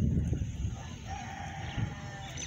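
A rooster crowing, one drawn-out call that starts about halfway through, over a low rumble that fades during the first half.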